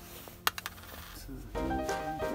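A small metal washer drops onto hard plastic with a sharp click about half a second in, followed by a few quick bounces. Background music comes in near the end.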